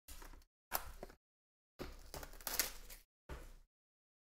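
Hands handling and opening an Upper Deck Clear Cut card box: the packaging rubs, slides and scrapes in four short bursts of handling noise, the longest lasting about a second starting two seconds in.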